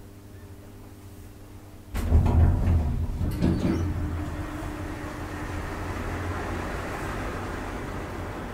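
Kristianstad Hiss & El hydraulic elevator starting off: about two seconds in, the pump motor comes on suddenly with a low hum, and the car doors clatter shut over the next couple of seconds. The pump then runs steadily as the car travels.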